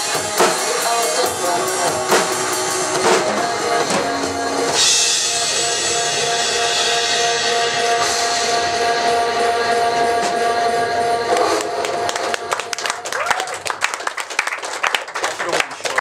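Drum kit played live along to a drum-and-bass backing track: dense beats and cymbal crashes, then a long held chord from about five seconds in. After about eleven seconds this gives way to a quick, irregular patter of sharp hits.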